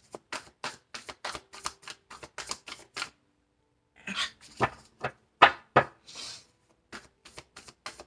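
A tarot deck being shuffled by hand: quick runs of cards snapping and slapping against each other, about five a second. It pauses about three seconds in, then comes back louder in the middle with a short hiss, and picks up again lightly near the end.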